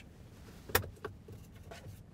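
Center console lid latch of a 2015 GMC Yukon clicking as a hand releases it and opens the lid: one sharp click a little under a second in, then a few fainter clicks and knocks.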